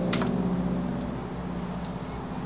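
A steady low mechanical hum with several even tones. Just after the start comes a single short, crisp snip of scissors through electrical tape.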